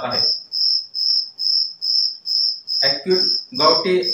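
A cricket chirping steadily in a high, even pulse, about three chirps a second. A man's voice speaks briefly near the end.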